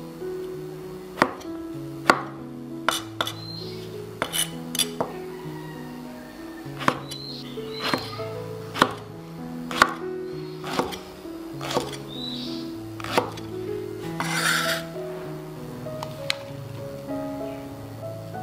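Chef's knife chopping king oyster mushroom on a wooden cutting board: single sharp knife strikes on the board, irregularly spaced about once a second, with one short rasping sound about three-quarters of the way through. Background music plays throughout.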